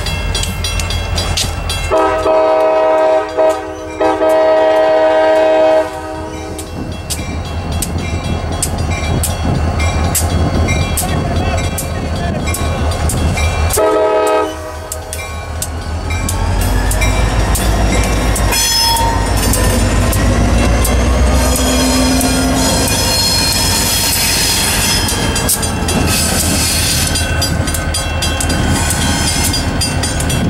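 EMD GP40-2 diesel locomotive sounding its horn: a string of blasts in the first six seconds and one short blast about fourteen seconds in. Its diesel engine runs throughout and is loudest from about sixteen seconds, as the locomotive rolls past close by.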